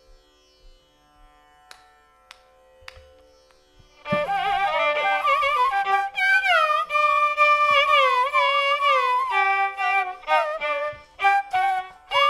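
Carnatic melody on violin and flute: after about four faint seconds with a fading held note and a few soft taps, the melody enters loudly with sliding, ornamented notes (gamakas).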